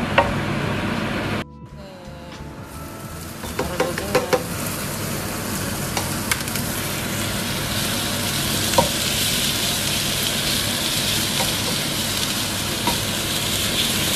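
Minced garlic and minced raw meat sizzling in hot oil in a nonstick frying pan while being stirred with a wooden spatula, with occasional light knocks of the spatula on the pan. The sizzle drops away about a second and a half in, then builds and grows steadily louder.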